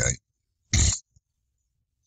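One short, loud noise from a man's throat or nose, not a word, lasting about a third of a second, coming just under a second in between two stretches of silence in his narration.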